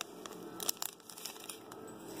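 Foil booster pack wrappers crinkling as they are handled, a few scattered light crackles.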